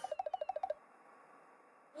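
Comic trembling sound effect of a TV edit: about a dozen rapid pulses, with a faint falling whistle over them, lasting under a second.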